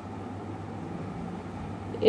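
A steady low hum under a faint even background hiss.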